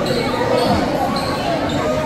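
Chatter of children and adults echoing in a sports hall, with dull thuds like a ball bouncing on the floor.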